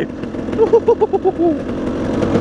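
A man laughing in a quick run of about seven short 'ha's, starting about half a second in, over a dirt bike's engine running steadily as it rides.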